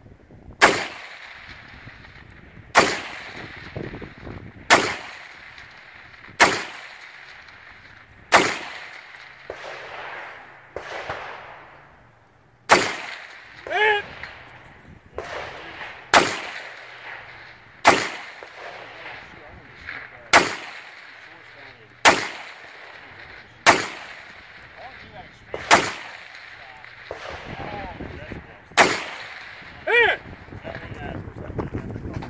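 Rifle fired one shot at a time from the prone position, about thirteen sharp shots roughly every two seconds, with a longer pause near the middle. Each shot has a short echo.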